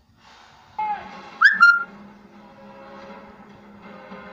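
Music playing from a television, with a few loud, sliding whistle-like notes about a second and a half in.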